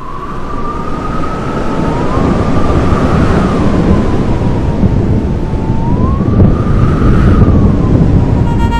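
A siren wailing, its single tone gliding slowly up and down, over a loud rumbling noise that builds over the first couple of seconds.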